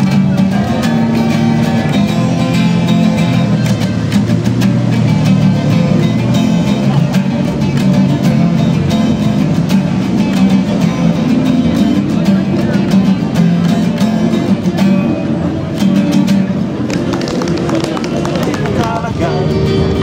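Two acoustic guitars played together, continuous and fairly loud.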